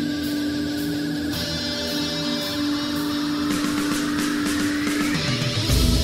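Heavy rock music: held guitar notes, with a rising pitch sweep through the second half, then drums and bass come in loudly near the end.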